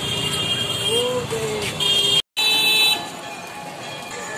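Busy street ambience of voices and passing traffic, with vehicle horns honking loudly a little past halfway. The sound drops out completely for an instant where the recording is cut.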